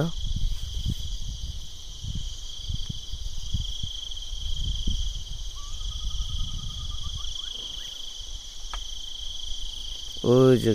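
Steady, unbroken high-pitched chorus of insects in the hills at dawn, with an irregular low rumble on the microphone underneath.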